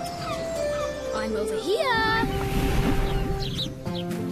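Cartoon sound effects over children's music: held notes, then a falling, whistling glide about two seconds in, followed by a rushing whoosh that fades near the end.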